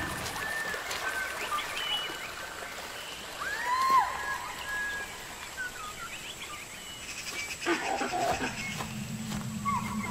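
Wild animal calls in a forest soundscape: many short chirps and one louder swooping call that rises then falls about four seconds in, over a faint hiss. A low steady hum comes in near the end.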